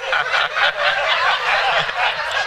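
A studio audience laughing loudly together, many voices overlapping in an uneven wave of laughter.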